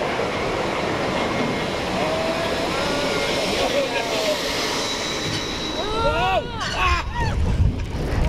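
Roller coaster car (an S&S 4D Free Spin coaster) climbing its lift hill with a steady mechanical clatter. From about six seconds in, riders scream and whoop in rising-and-falling cries as the car crests and starts to drop, with wind buffeting the microphone.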